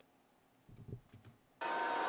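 Near quiet with a few faint low knocks. Near the end a steady wash of noise cuts in suddenly: the audio of the wrestling broadcast starting to play.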